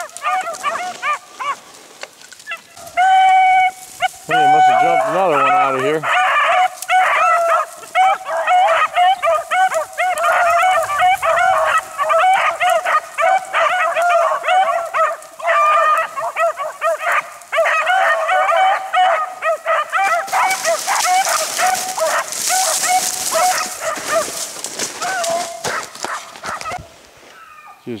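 Rabbit-hunting hounds baying almost without a break as they run a rabbit on its trail, several voices overlapping, starting about three seconds in; one longer, lower drawn-out bawl comes early. The continuous baying is the sign that the dogs are on the rabbit's track in full chase.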